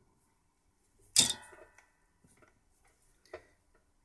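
Soldering iron set back in its metal stand with one sharp, ringing clink about a second in, followed by a few faint ticks and a small click near the end.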